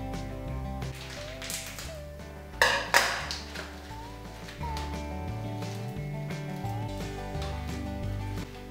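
Background instrumental music with a stepping bass line and sustained notes. About two and a half to three seconds in, two sharp clinks or knocks stand out above it.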